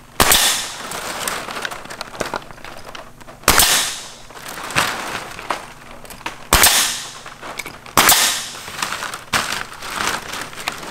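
Pneumatic coil nailer firing nails through synthetic thatch shingles into wood purlins: four sharp shots a few seconds apart, each followed by a short hiss, with a couple of fainter knocks between them.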